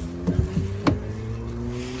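A motor vehicle engine accelerating: its hum rises slowly in pitch. A single sharp click cuts in about a second in.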